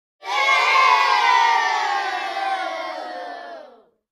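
A crowd cheering, many voices in one long shout that swells quickly and then fades away over about three and a half seconds, sinking slightly in pitch as it dies out.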